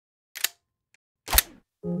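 Two sharp clicks about a second apart, the second louder and deeper, then music and a singing voice begin right at the end.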